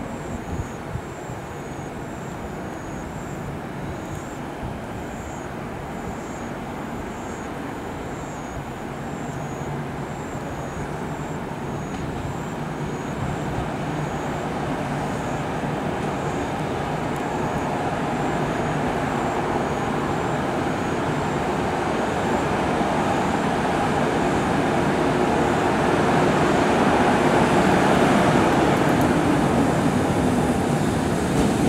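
EH500 electric locomotive hauling a container freight train as it approaches, its running rumble of wheels on rail growing steadily louder.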